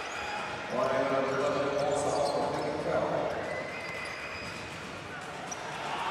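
Basketball bouncing on an indoor court under steady arena crowd noise during live play. A louder sustained pitched sound swells about a second in and fades out by the middle.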